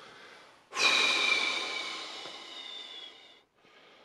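A person's long, breathy exhale blown out through the mouth: it starts suddenly about a second in and fades away over about three seconds.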